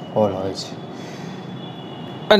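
A man's brief spoken syllable just after the start, then steady room noise: an even hiss with a faint, steady high whine.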